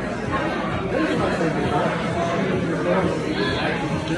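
Background chatter of restaurant diners: several voices talking over one another at a steady level.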